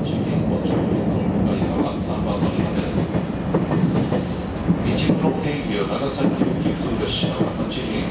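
JR Kyushu YC1 series hybrid railcar running, heard from inside the cab: a steady low running hum with continual clicks and knocks as the wheels cross rail joints and the points into the station. A few short high-pitched sounds come through about five and seven seconds in.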